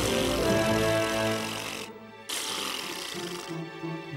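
Cartoon background music with sustained notes, overlaid by two spells of hissing noise: the first about two seconds long, then a short break, then a second lasting just over a second.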